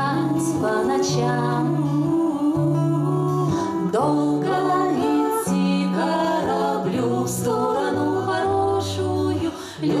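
Three women singing a song together, accompanied by a plucked acoustic guitar.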